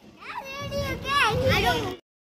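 Children's high-pitched voices calling out in play, rising and falling in pitch, with a low rumble beneath; the sound cuts off abruptly at the end.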